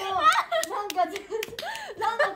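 Several people clapping their hands in quick, irregular claps while laughing.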